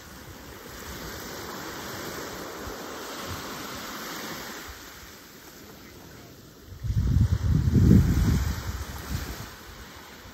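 Small waves lapping and washing onto a sand and pebble shore, a soft steady hiss. About seven seconds in, wind buffets the microphone with a loud low rumble lasting about two seconds.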